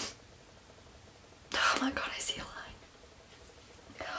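A woman's breathy whisper, once, starting about a second and a half in and lasting about a second, with quiet room tone around it.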